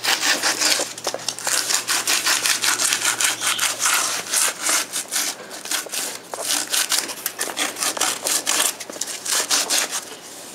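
Quick back-and-forth rubbing strokes of a hand-held abrasive against the rim of a segmented wooden bowl blank, evening out the surface and its fuzzy torn grain. A faint low hum runs underneath.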